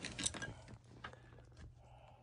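Faint rustling and small clicks of handling and movement, fading after about a second to quiet room tone with a low steady hum underneath.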